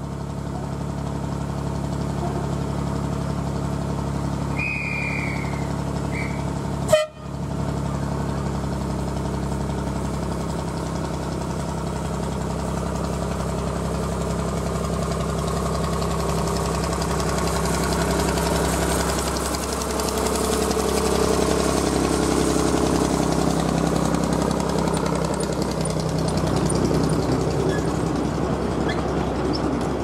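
Diesel-hydraulic miniature locomotive D1994 "Eastleigh" running steadily as it draws its coaches up to the platform. There are two short high toots about five seconds in and a sharp click a second or so later. Wheel and running noise grows in the second half as the coaches come alongside.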